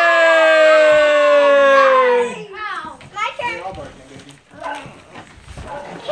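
A child's long drawn-out vocal cry, held for about two seconds while its pitch slides slowly down. It is followed by quieter children's chatter and playful noises.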